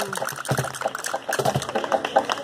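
Sharp, irregular claps and taps from a flamenco group, with a couple of low thumps about half a second and a second and a half in, just after a sung phrase's falling held note ends.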